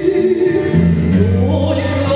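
A female singer performing an old Russian romance with instrumental accompaniment: long held notes over a steady bass line. The harmony moves to a new chord about a second in.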